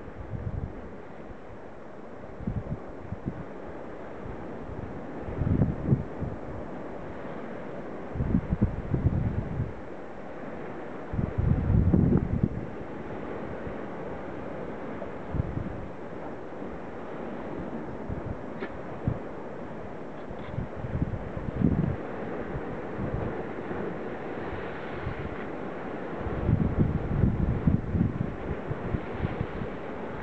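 Wind buffeting the camera microphone in repeated gusts of low rumble. The strongest come in the middle and near the end, over a steady rush of surf from the sea below.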